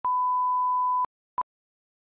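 Broadcast slate test tone: a steady pure reference tone for about a second, then a short countdown beep of the same pitch about a second and a half in.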